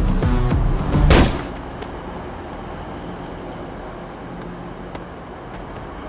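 Electronic action-film score with a heavy beat, cut off about a second in by one loud bang. After it comes a steady, quieter low rumble of background noise.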